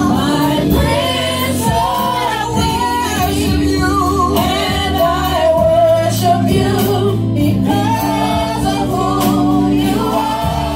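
A group of women singing gospel together into microphones, with sustained low chords and percussion in the instrumental accompaniment.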